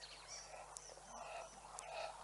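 Black-backed jackals giving faint, repeated calls while feeding together on a carcass, about two calls a second. High, short chirps of small birds sound over them.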